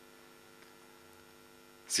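Faint steady electrical hum, a set of even tones, in a pause between spoken sentences; a man's reading voice starts again at the very end.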